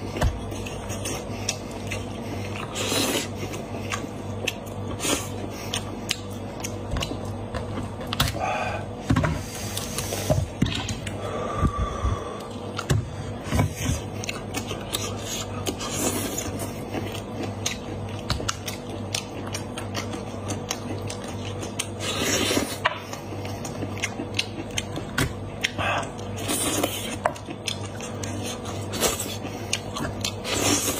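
Close-miked eating of a whole cooked head: the meat is pulled and torn off the bones by hand, with wet chewing and lip sounds throughout. The sound is made up of many small, irregular clicks and crackles.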